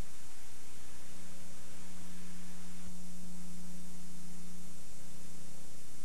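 Steady electrical hum with background hiss and no program sound: line noise from the video's recording or transfer chain.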